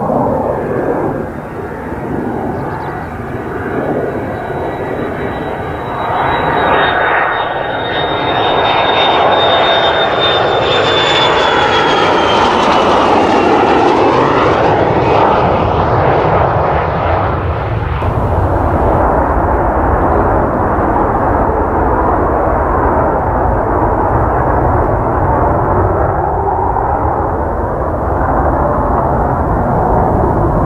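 Mitsubishi F-2B fighter's single F110 turbofan passing close on landing approach. A high whine holds, then drops in pitch as the jet goes by, over a roar that builds and stays loud after the pass.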